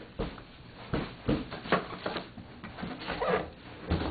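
Irregular rustling and soft knocks of packaging being handled: plastic wrap and cardboard as a heavy pot is lifted out of its box.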